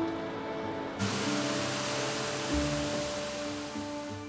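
Background music with held notes, joined about a second in by a steady rushing hiss from seawater boiling down to make salt.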